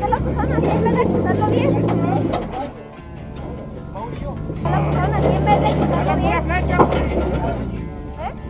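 A rock-crawling Jeep's engine revs in two surges of a couple of seconds each, with a lull between, as it climbs under load over a boulder ledge. Voices carry over it.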